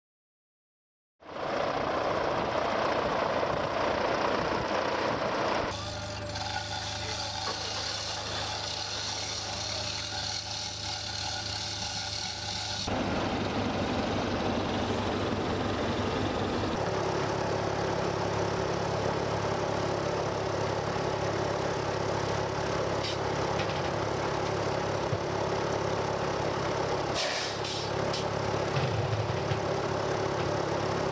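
A heavy engine running steadily, starting about a second in, with abrupt shifts in its sound where separate takes are cut together, and a few short knocks near the end.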